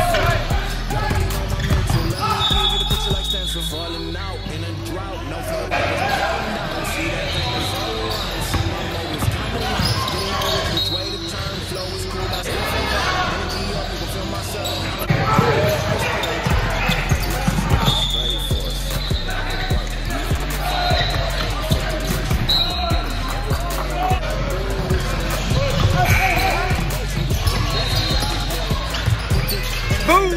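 Gym sound of a youth basketball game: a basketball dribbling and bouncing on the court, with brief high-pitched squeaks every few seconds and indistinct voices, under background music.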